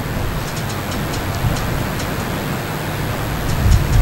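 Steady background noise with a few faint ticks, and a low thump just before the end.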